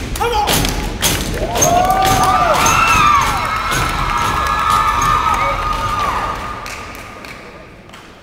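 Step team stomping and clapping on a portable stage riser: sharp thuds in quick succession over the first few seconds. Audience whoops and cheers rise over the stomping through the middle and die away near the end.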